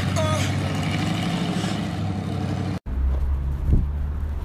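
Batmobile Tumbler replica's engine running with a steady low rumble as the car drives along the street. The sound cuts out for an instant about three-quarters of the way through, then the rumble resumes.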